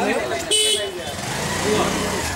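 A vehicle horn sounds once, a short steady honk about half a second in, with people talking around it.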